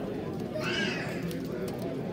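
Pigeons cooing over a steady murmur of people talking in a show hall, with a short high-pitched call a little over half a second in.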